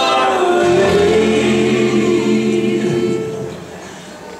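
A bluegrass gospel band singing together in harmony, the voices carrying the sound with little instrumental backing. They hold a long chord that fades out about three and a half seconds in, leaving a brief gap.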